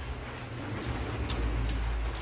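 A person chewing a mouthful of broccoli salad, with a few soft, short mouth clicks, over a steady low rumble.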